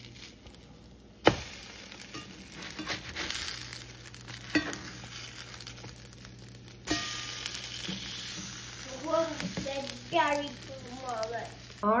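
Egg-dipped bread slices sizzling as they fry in a nonstick pan, with a few light taps and scrapes of a spatula turning them.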